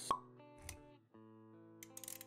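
Intro jingle for an animated logo: a single short pop sound effect just after the start, then soft, held music notes with a low thud and a brief drop-out around a second in.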